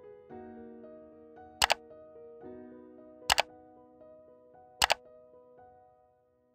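Soft piano background music, broken by three sharp double clicks about a second and a half apart, like a camera shutter: the click sound effects of a subscribe-button animation. The music drops away right at the end.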